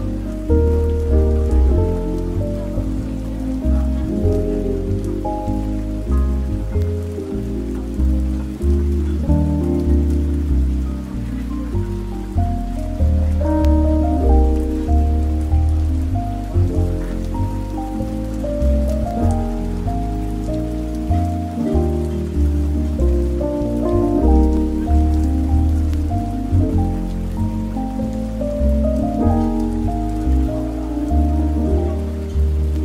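Soft, relaxing jazz music with a low bass line under mid-range chords, over a faint even hiss with tiny clicks.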